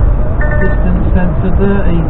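Cab noise of a DAF XF lorry at motorway speed on a wet road: a loud, steady low rumble of engine and tyres. Music with a voice plays over it, the voice coming in about a second in.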